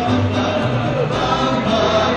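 A small band with violin and horns playing over a steady bass line, with voices singing together.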